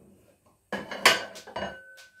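Kitchenware clinking: a quick run of sharp knocks about two-thirds of a second in, one of them leaving a ringing tone that hangs on.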